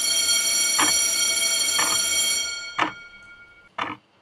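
A bell rings loud and steady for about two and a half seconds, then dies away over the next second. Under it a wall clock ticks about once a second.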